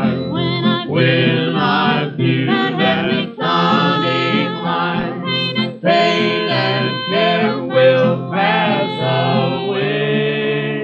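Mixed vocal quartet singing a country gospel song in close harmony over plucked acoustic guitar, from a 1953 recording.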